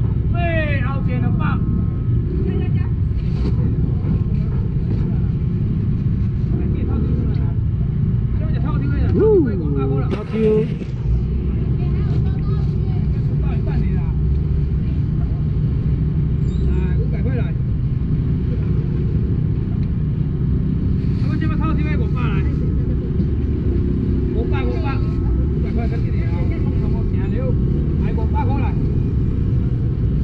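Busy outdoor market ambience: a steady low rumble underlies scattered voices of nearby vendors and shoppers. The voices come and go a few times.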